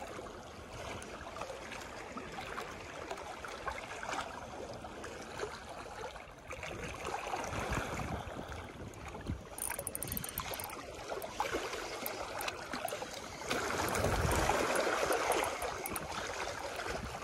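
Steady lapping of water against a rocky shoreline. Near the end the sound grows louder as a Daiwa Legalis LT2000S spinning reel is wound in fast.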